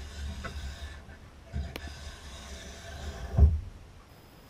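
A Swix Edger 2x2 edge file scraping along a ski's steel side edge, the rasp fading over the first second. A couple of light knocks follow, and a louder low thump comes near the end as the tool and ski are handled.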